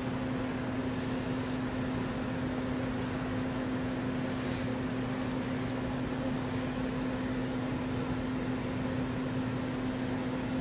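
Steady low hum with one strong droning tone, unchanging throughout, with a couple of brief soft hisses about four and a half to five and a half seconds in.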